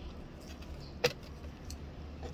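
A single sharp click about a second in as a succulent is handled in a glazed pot, over a low steady hum.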